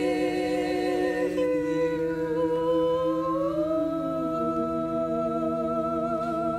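Four women's voices singing a cappella in barbershop harmony, holding long sustained chords with vibrato to close the song. The chord shifts about a second and a half in, and one voice slides up to a higher note around halfway, where the chord is then held.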